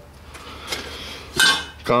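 Metal engine parts clinking as a hand rummages in a plastic bin of parts, with a louder clatter about one and a half seconds in.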